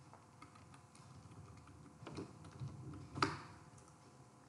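Computer keyboard keystrokes: a few scattered, quiet taps, the loudest a little past three seconds in.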